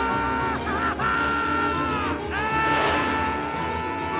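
Cartoon cat yowling in pain as a dog bites its tail: a long, high wail given three times with short breaks, each sliding up at the start and dropping off at the end, over an orchestral cartoon score.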